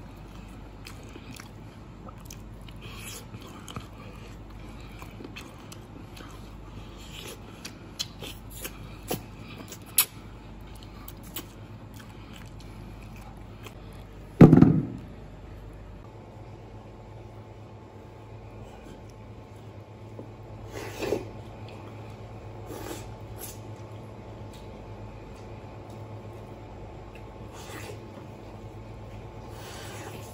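Gnawing and chewing braised pork bone meat: small wet clicks and smacks of biting, with one loud thump about halfway through.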